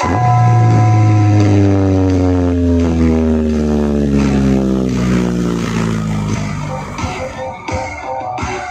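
Loud DJ dance music played through a stacked-speaker sound system (Etha Pro Audio) at a sound check. A heavy bass note with a slowly falling pitch runs for about seven seconds, then a beat kicks in near the end.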